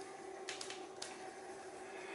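Faint scratching of a colored pencil shading lightly across paper, over a low steady hum.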